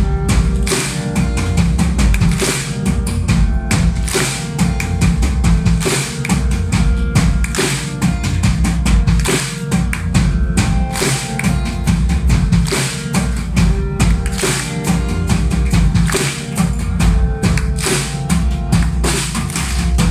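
Live band playing an instrumental passage with no vocals: a drum kit keeps a steady beat over acoustic guitar and low sustained notes.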